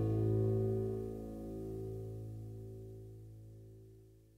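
The closing chord of a 1970s psychedelic pop-rock song, played on guitar, held and ringing out. It fades slowly away to nearly nothing by the end.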